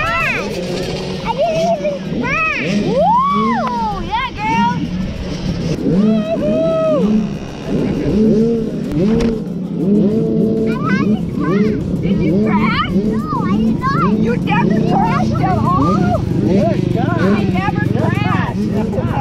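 Several small motocross bike engines revving up and down as they ride around the dirt track, over a steady lower engine note.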